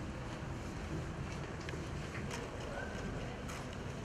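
Outdoor ambience: a steady low rumble with a few faint, scattered clicks.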